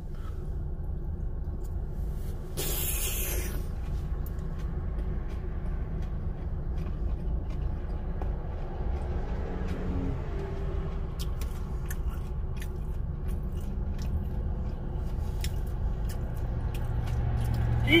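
Steady low rumble inside a car cabin while a man chews food, with small mouth clicks in the second half and a brief hiss about three seconds in.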